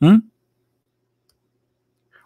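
A man's brief questioning 'hmm?' rising in pitch, then silence.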